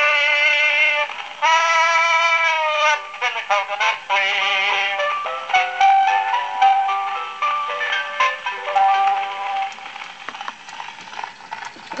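An early acoustic two-minute wax cylinder record played through the horn of a Columbia AB graphophone: a male tenor sings the final line of the song with instrumental accompaniment. The accompaniment plays out the closing bars and dies away about ten seconds in, leaving faint surface crackle.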